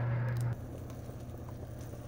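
Dry almond-flour breadcrumbs crackling faintly as they are crumbled by hand, over a steady low hum. Both stop abruptly about half a second in, leaving quiet room tone.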